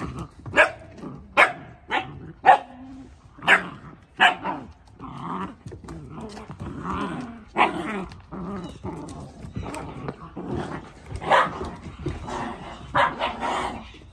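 Puppies barking and growling as they play-fight and tug over a plush toy: a quick run of sharp barks in the first few seconds, then barks further apart with lower growls between them.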